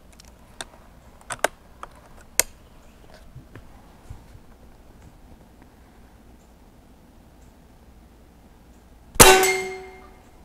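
A few light clicks of the rifle being handled in the first seconds. About nine seconds in, a Benjamin Bulldog .357 big-bore PCP air rifle fires and the slug strikes a hanging steel gong, which rings with a few clear tones fading over most of a second.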